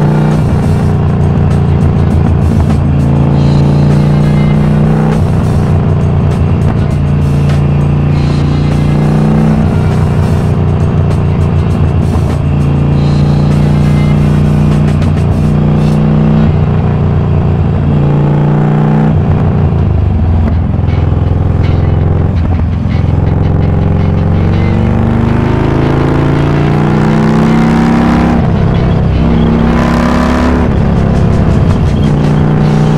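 Harley-Davidson Iron 1200 Sportster's air-cooled V-twin running at highway speed through a Cobra El Diablo 2-into-1 exhaust, its pitch stepping and rising in places as the throttle changes, with wind noise over it.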